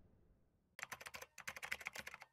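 Computer-keyboard typing sound effect: a fast run of light key clicks that begins almost a second in, accompanying on-screen text being typed out.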